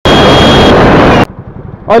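Very loud wind rush over the microphone of a motorcycle-mounted camera at speed, cutting off suddenly about a second in. After the cut, quieter motorcycle engine and road noise.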